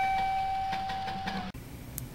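The last held guitar note of a music intro ringing out and slowly fading, cut off abruptly about one and a half seconds in, leaving faint room tone.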